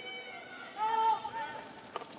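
A single high-pitched call from a player on the field, heard once about a second in over faint outdoor ambience, with a brief click near the end.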